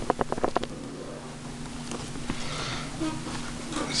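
HP dv6 laptop lid being lifted open by hand: a quick run of sharp clicks and taps in the first half second, then quieter scattered handling and rubbing over a faint steady hum.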